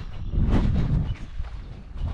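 Wind rumbling on the microphone, strongest about half a second to a second in, with footsteps in dry grass as someone walks.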